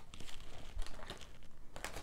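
Soft rustling and small ticks of oracle cards sliding against one another as a deck is handled.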